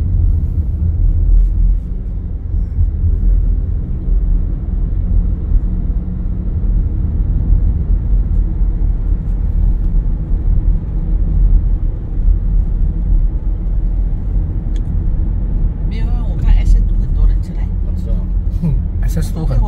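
Steady low rumble of a car driving along at road speed, heard from inside the cabin: engine and tyre noise. A voice comes in briefly near the end.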